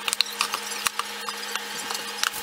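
A spoon scraping and clicking against a stainless steel mixing bowl as a stiff flour-and-yogurt dough is stirred, in scattered light ticks, with a faint steady hum beneath.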